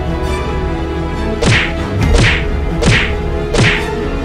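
Fight sound effects of blows landing: four swishing whacks, each a falling whoosh that ends in a thud, about one every 0.7 s from about a second and a half in, over a background music bed.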